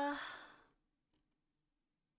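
The end of a woman's drawn-out, voice-acted 'ta-da', trailing off into a breathy exhale within the first moment. After that, near quiet with only a faint steady hum.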